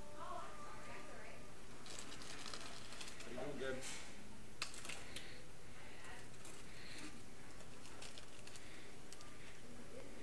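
Paper nugget bags and wrappers crinkling and rustling in short bursts as hands dig into them, over steady restaurant background noise with faint murmuring voices.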